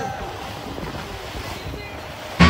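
Wind buffeting the microphone over a steady rush of sea water around a boat.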